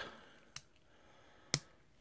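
LEGO plastic bricks clicking together as a plate is pressed onto the model, two short clicks, the second louder.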